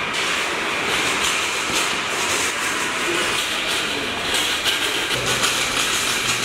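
Metal wire shopping cart rolling across a concrete floor, its wheels and basket rattling steadily.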